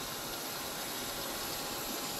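Hot frying oil sizzling in a pan: a steady, even hiss.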